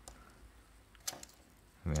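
A few faint, sharp clicks of small plastic parts and a jeweller's screwdriver as a circuit board is worked loose from a tiny toy tank's plastic chassis, about a second in; a man's voice comes in near the end.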